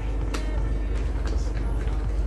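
Plastic buckles and nylon straps of a phone chest-mount harness being handled, with a light click about a third of a second in, over a steady low rumble.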